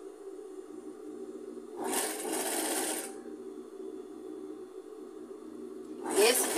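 Industrial straight-stitch sewing machine running one short burst of stitching, about a second long, starting about two seconds in, over a steady low hum.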